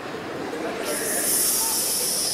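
A steady, high hiss starts about a second in and holds, over a faint low background.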